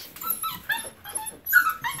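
Puppies whimpering: a string of short, high-pitched cries, the loudest about one and a half seconds in.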